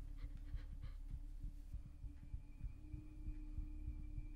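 Horror-film sound design: a low pulsing rumble under a steady held drone, with a faint high tone creeping in a little before halfway, and a girl's quick, frightened breathing.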